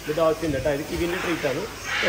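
A man's voice talking, with no clear other sound.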